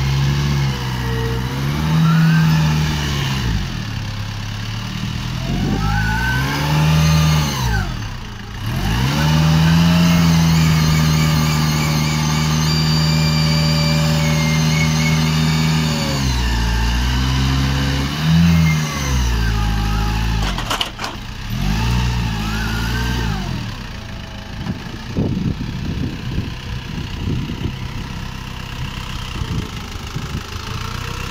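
Toyota forklift engine revving up and down in several surges, held at high revs for about six seconds in the middle, then running lower and unevenly near the end, with a single sharp click about two-thirds of the way through.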